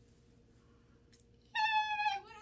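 Quiet room tone, then about one and a half seconds in a single high-pitched call, held steady for about half a second and dipping slightly at its end.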